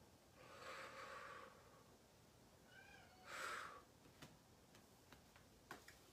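Quiet audible breathing from a person doing a breathing exercise: a long exhale about half a second in and a shorter, sharper breath a little past three seconds. Just before the second breath comes a brief meow from a house cat. A few faint clicks follow near the end.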